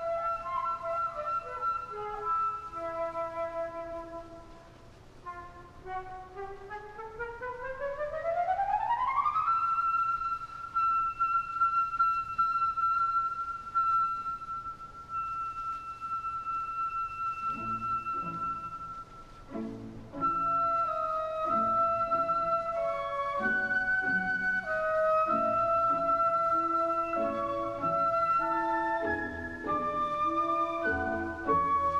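Opera orchestra, with a solo woodwind line out in front. The solo plays a few descending notes, then a smooth upward run that lands on a long held high note. About two-thirds of the way through, the orchestra enters quietly beneath it with chords, and the solo melody carries on over the accompaniment.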